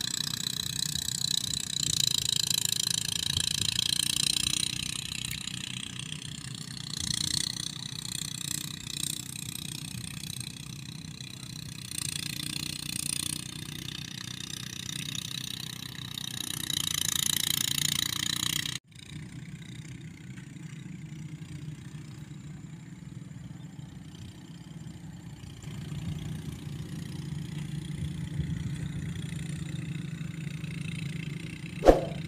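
Small engine of a power rice thresher running steadily, with a high hiss over its hum. About two-thirds of the way through the sound breaks off abruptly, and a quieter, steady engine hum follows.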